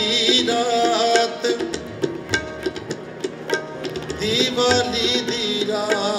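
Sikh kirtan accompaniment: harmoniums holding tones under two pairs of tabla. The texture thins to sparse tabla strokes around the middle, then the full ensemble comes back in about four seconds in.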